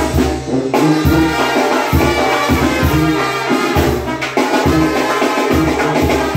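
Mexican banda-style brass band playing: a sousaphone bass line under held trumpet and saxophone notes, with drums keeping the beat.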